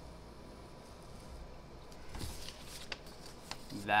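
Faint pen scratching on paper, then a sheet of paper rustling about two seconds in as it is handled, with a couple of light clicks.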